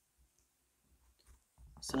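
Near silence with a few faint taps and rubs as fingers smooth the end of vinyl electrical tape onto an XLR plug, then a man starts speaking near the end.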